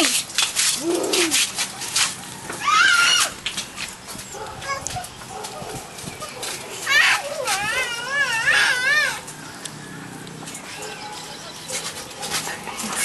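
A dog whining in high, wavering calls: a short rising whine about three seconds in, then a longer run of wavering whines from about seven to nine seconds.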